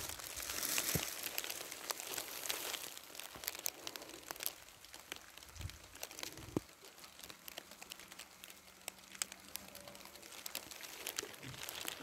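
Dry grass rustling and crunching underfoot, with irregular small crackles, busier in the first few seconds and sparser after.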